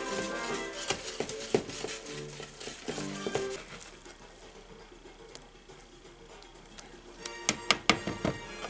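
Soft background music, with a wire whisk tapping and scraping against a mixing bowl as waffle batter is whisked by hand. There are a few sharp clicks in the first seconds and a quick cluster of them near the end.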